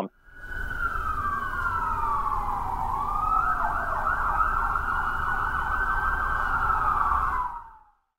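Emergency-vehicle siren: a slow wail falling in pitch for about three seconds, then a fast warbling yelp, over a steady low rumble. It fades out near the end.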